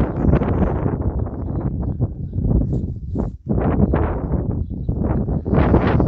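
Wind buffeting the microphone in uneven gusts, with a short lull about three and a half seconds in.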